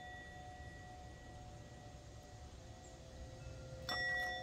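Small brass singing bowl: its ringing from an earlier strike lingers and slowly fades. Just before the end it is struck with a wooden mallet, starting a fresh clear ring with several tones.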